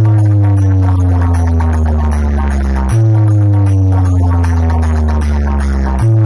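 Large DJ sound system of stacked horn loudspeakers and bass cabinets playing loud electronic bass: two long bass notes, each sliding slowly down in pitch for about three seconds, the second starting about halfway through.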